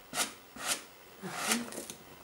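A card scraped over pasted kraft paper strips on a balloon to smooth them down, in three short scraping strokes, the last one longest.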